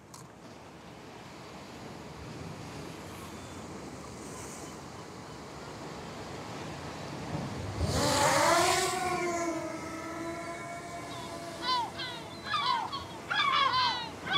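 A DJI Mini 2 drone's motors spin up about halfway through, a whine that rises sharply in pitch and then holds steady as the drone takes off. Before that there is only a steady background hiss, and near the end gulls call in short, repeated cries.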